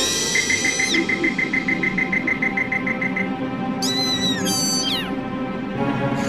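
Cartoon background music with whistle-like sound effects: a tone slides up and holds for about a second, then comes a quick warbling trill, and about four seconds in a high tone rises and falls away.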